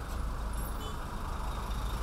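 Heavy road traffic: trucks and a minibus idling and creeping forward in a congested queue, a steady low engine rumble.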